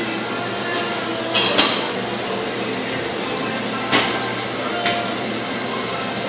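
A kitchen knife knocking and clinking against a plastic cutting board as a fish is cut open: two sharp knocks about a second and a half in, the loudest, then single knocks near four and five seconds, over a steady low hum.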